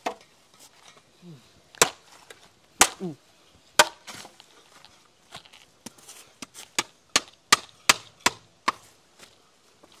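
Sharp chopping strikes on wood with a hand tool: three blows about a second apart, then a quicker run of about ten.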